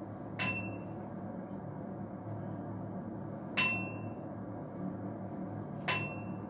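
A small bell struck three times, a few seconds apart, each strike giving a single clear high ring that dies away within about half a second, over a steady low hum in the room.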